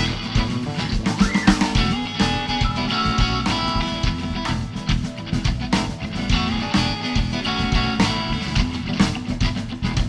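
Live blues band playing an instrumental passage: electric guitar, bass guitar, drum kit and keyboard, with no singing.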